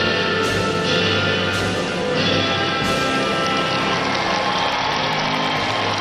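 Orchestral music of a national anthem played over an arena sound system, in full sustained chords that shift every second or so.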